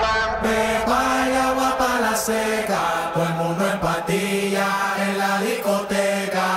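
Music from a club DJ mix: a melody of long held notes, with little bass under it from about the middle on.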